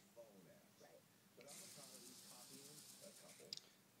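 Flip-dot display's dots flipping rapidly, a faint hissing rattle that starts about a second and a half in and stops shortly before the end, followed by a single click.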